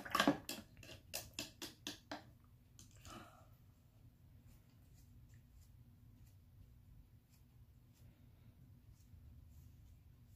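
A paintbrush tapping and clicking in a paper cup of rinse water: a quick run of small taps in the first two seconds, then a short scuff and faint ticks as the brush is wiped on a tissue.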